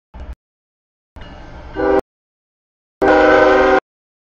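CSX freight locomotive's multi-note air horn sounding as the train comes up to the grade crossing. Under a low diesel rumble, a first horn blast starts near two seconds in, and a louder blast follows about a second later. The sound breaks off abruptly between these short fragments.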